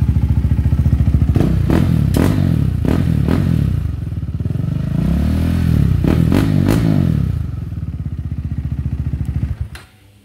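KTM RC 390's 373cc single-cylinder engine running with the exhaust removed, blipped and revved so that it cracks and pops repeatedly: backfires from the open header pipe. It rises and falls in revs about halfway through, settles back, and is switched off near the end.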